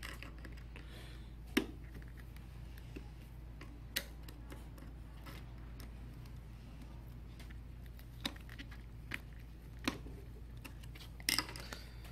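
Light metallic clicks and taps of a small screwdriver working the feed dog screws of a Juki DDL-5550N industrial sewing machine: a handful of separate sharp clicks, one about a second and a half in and a close pair near the end, over a steady low hum.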